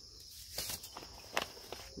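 Paper seed packets being handled: a soft rustle about half a second in and a short sharp click near a second and a half, over a steady high-pitched insect chorus.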